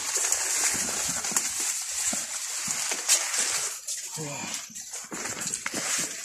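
Maize leaves rustling and crackling as a person pushes through the plants and handles the stalks, with a brief murmured voice about four seconds in.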